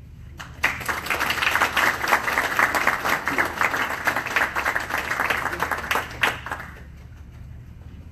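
Audience applauding. It starts about half a second in and dies away after about six seconds.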